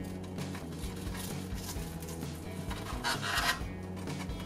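Crispy breadcrumb crust of a baked chicken nugget crunching as it is opened, a short scratchy rasp about three seconds in, over steady background music.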